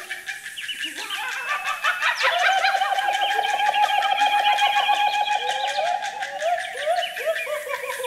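A choir imitating jungle animals with their voices: many overlapping bird-like whistles, hoots and gliding calls, with a long warbling trill starting about two seconds in and a fast run of clicks under it.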